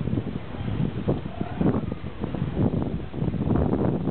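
Wind buffeting the microphone in irregular low gusts, over the faint running of the 1920 Rolls-Royce armoured car as it drives slowly past.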